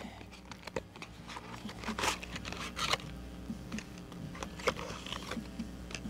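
Cardboard box and plastic packaging being opened and handled by hand: faint scattered crinkles and rustles with a few sharper crackles.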